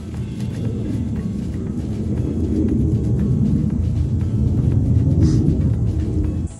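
Wind buffeting the microphone outdoors: a loud low rumble that builds over the first few seconds and stays strong.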